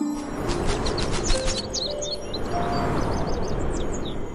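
Harp notes climbing in steps over a loud rushing swell, with many small birds chirping rapidly above it in two bursts.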